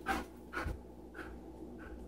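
A dog panting in a few short breaths, with a soft thud about two-thirds of a second in.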